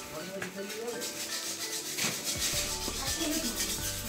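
A steady, scratchy rubbing noise with faint music underneath; a low hum joins about halfway through.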